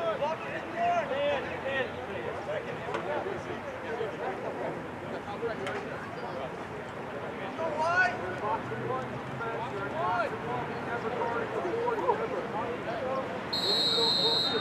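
Voices of players, coaches and spectators calling out across an outdoor lacrosse field, with no clear single speaker. Just before the end a high, steady whistle blast starts, typical of a referee's whistle stopping play.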